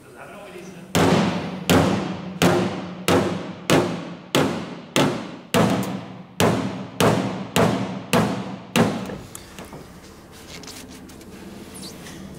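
A hammer striking the car's steel wheel-arch panel about thirteen times at a steady pace of roughly one and a half blows a second, each blow ringing briefly, stopping about nine seconds in.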